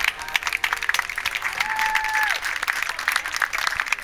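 Audience applauding with dense, continuous clapping. About halfway through, a single short whistle holds one pitch for under a second, then drops away.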